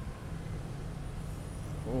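Steady low rumble of street traffic, motor scooters and cars running at an intersection below.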